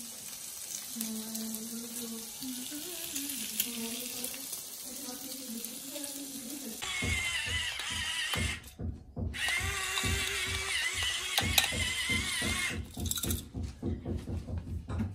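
A faint hiss of a pan of eggs and vegetables frying. About seven seconds in, an electric pepper grinder runs with a whirring, grinding rattle, stopping briefly near nine seconds and then running again for a few seconds.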